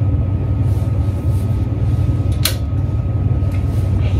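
A clothes hanger clicking once against the metal rail of a clothing rack, about halfway through, over a steady low hum.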